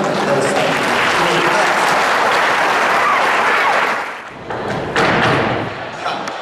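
Audience applause, dense and steady for about four seconds, dipping and then swelling again briefly near the end.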